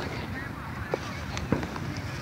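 Fireworks popping: two sharp pops, about a second in and again half a second later, over a steady background of faint voices.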